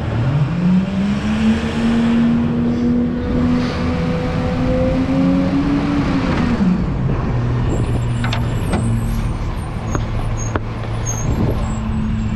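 Rear-loader garbage truck's diesel engine pulling away, its pitch climbing over the first second and a half and holding, then falling back to a low steady run about six and a half seconds in as the truck eases off. Scattered rattles and knocks come from the truck body.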